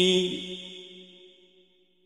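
A male reciter's voice chanting the Quran in slow, melodic tajwid style, holding the last long note of a phrase. It breaks off about half a second in and dies away in echo over the next second.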